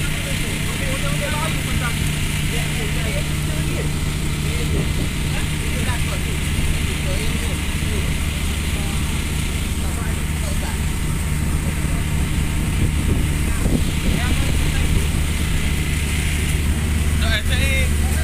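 A boat's engine running steadily with a low drone, under the hiss of fire hoses spraying water onto a burning tugboat.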